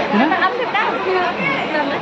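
Several people talking and chatting: speech only.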